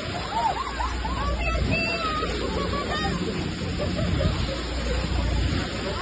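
Water rushing and splashing off a boat's bow as it cuts through the sea, over a steady low rumble, with a hubbub of people's voices in the background.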